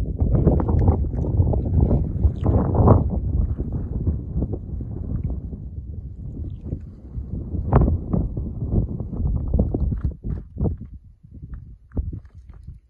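Footsteps crunching on loose stony ground, with a rumble of wind on the microphone. It eases off about halfway through, then a run of sharper crunching steps comes near the end.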